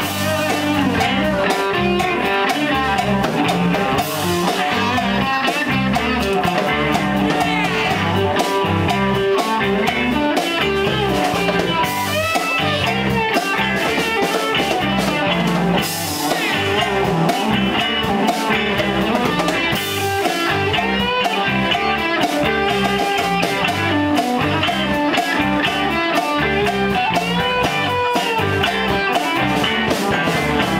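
Live blues-rock band playing an instrumental stretch: an electric guitar lead with bending notes over bass and drums. There are cymbal crashes every few seconds.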